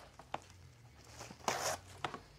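Plastic cling wrap being pulled off its roll from the box: a few small ticks, then a short ripping hiss of film unrolling about one and a half seconds in.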